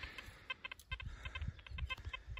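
Faint string of short, quick bird calls repeating through the background.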